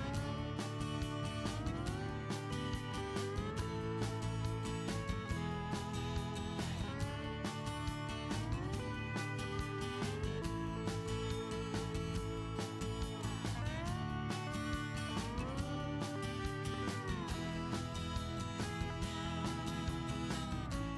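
Background music led by guitar, at a steady level, its notes sliding from one pitch to the next every few seconds.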